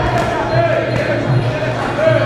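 Voices calling out and talking in a large echoing sports hall during a Muay Thai bout, with a couple of dull thuds from the ring.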